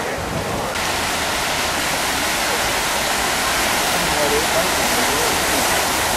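Fountain jets splashing into their basins: a steady, even rush of falling water that turns brighter and a little louder less than a second in.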